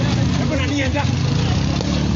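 Motorcycle engines running steadily, with people's voices calling out over them.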